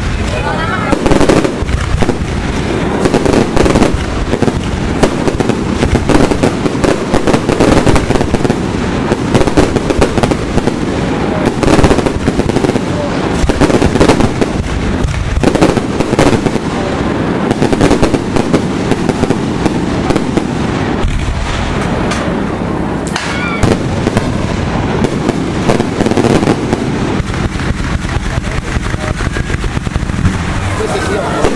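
Fireworks display: a dense, unbroken barrage of aerial shell bursts and crackling explosions, many bangs a second.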